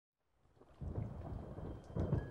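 Low rumble of thunder fading in from silence and swelling about a second in.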